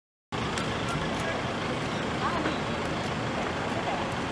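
Outdoor city ambience that cuts in abruptly: a steady wash of road traffic with faint voices in the distance.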